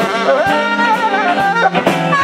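Live blues band, two saxophones playing a melody line together, bending and sliding between notes, over electric guitar, bass and a steady drum beat.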